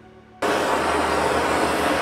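Handheld grinder running against cedar, cutting fine feather lines into the wood. It is a loud, steady, even noise that cuts in abruptly about half a second in.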